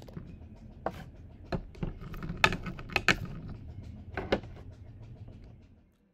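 Small plastic toy bones clattering and clicking as they are tipped from cardboard bowls back into a glass dish, with irregular knocks, over a low steady hum.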